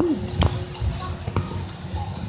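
Irregular knocks and thumps from a phone being jostled and handled, over a steady low hum, with a short rising-and-falling voice sound at the start.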